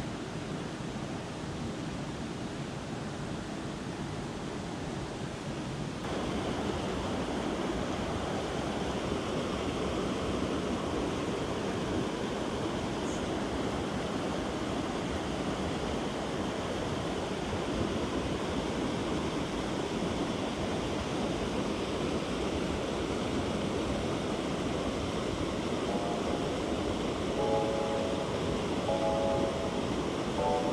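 Steady rush of a rocky mountain stream, water tumbling over a small cascade; it grows a little louder about six seconds in.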